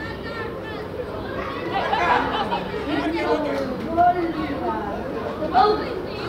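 Chatter of several voices talking and calling out over one another, as players and coaches do during a youth football match, with louder calls about two seconds in and near the end.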